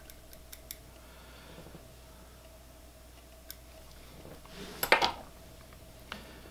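Faint handling noises of fly-tying work at the vise: a few small clicks near the start and again a little later, then a brief louder rustle about five seconds in.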